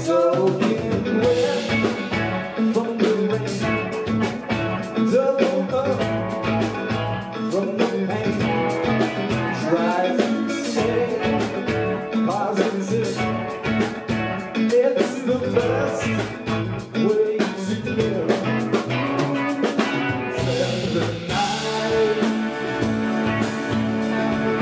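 A live band playing a song on electric guitars and drum kit, with a wavering, bending lead melody over the top.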